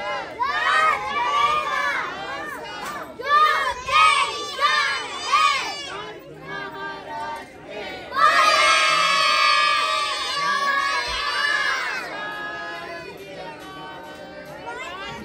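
A group of children chanting together in short repeated phrases, then a long, loud shout in unison about eight seconds in that fades away over the next few seconds.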